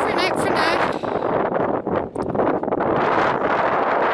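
Strong wind buffeting the camera's microphone, a loud, continuous rushing rumble that flutters in level.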